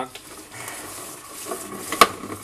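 Plastic salad spinner lid being pressed and worked onto its bowl, with soft plastic rubbing and small clicks, then a sharp click at the end. The lid is not catching properly in its seat.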